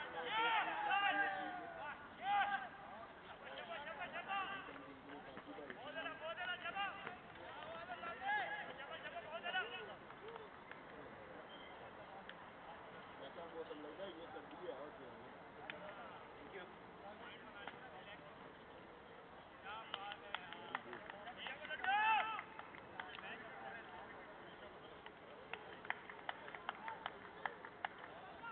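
Cricketers' voices shouting and calling across an open ground, loudest in the first few seconds and again about two-thirds of the way in, with scattered sharp claps toward the end.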